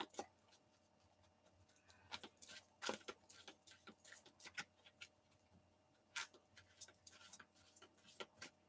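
Tarot cards being shuffled by hand: faint, irregular flicks and taps of card on card. They begin about two seconds in, with a short lull near the middle.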